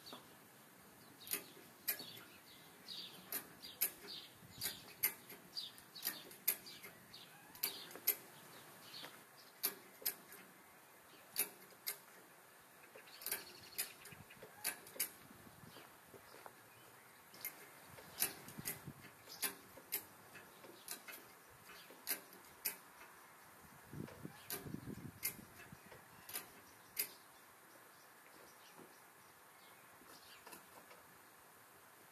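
A run of sharp metallic clicks, irregular, about one or two a second, from a wrench working the bolts that join the engine to the transmission. A low rumble comes in about 24 seconds in.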